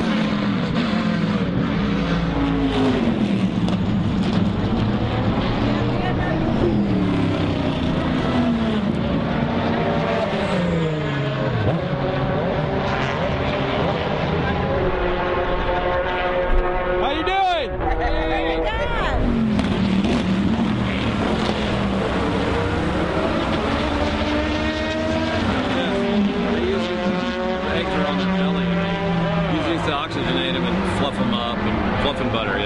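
Race car engines on the circuit, several cars at once, their notes climbing through the gears and falling away as they go by. One car passes close a little past halfway, its pitch dropping sharply.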